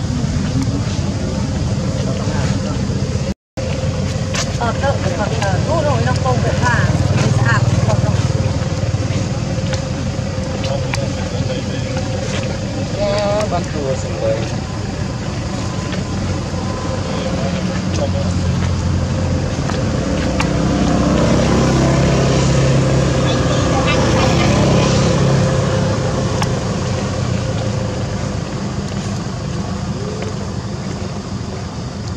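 A steady low rumbling noise, with people's voices talking at times behind it.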